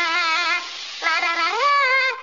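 A cartoon man's voice singing a wordless 'la la la' tune with a wobbling pitch: a short phrase, a brief pause, then a note that climbs and is held.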